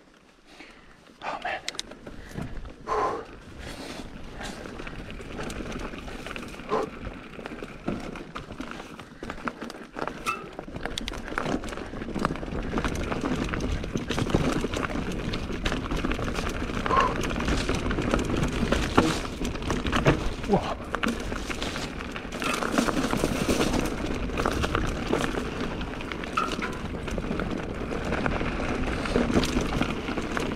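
Mountain bike riding down a narrow dirt-and-stone singletrack: tyres rolling over the ground with rattles and knocks from the bike, building from about ten seconds in as it picks up speed.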